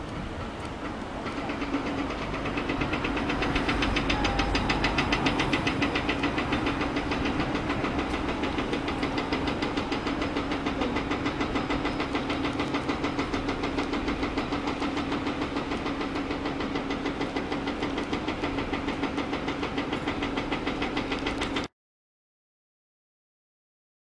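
Diesel engine of construction machinery running steadily, a hum with a fast, even pulsing, building up over the first few seconds; it cuts off abruptly near the end.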